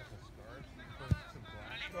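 Faint, distant voices, with one short, low thump about a second in that stands out as the loudest sound.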